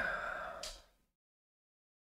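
A person sighing once, a breathy exhale about a second long.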